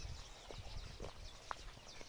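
Footsteps of a person walking, about two a second, over a low rumble on a clip-on microphone.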